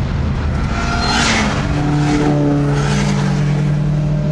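Chevrolet Nova muscle car's engine heard from inside the cabin, pulling under acceleration: its pitch climbs over the first second or so and then holds steady.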